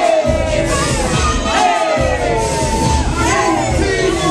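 Hip-hop beat played loud over a club sound system with a heavy bass, and a crowd shouting and cheering over it. The bass cuts out briefly at the start and again just before two seconds in.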